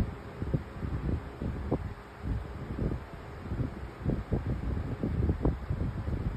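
Low, irregular rustling with soft knocks, several a second.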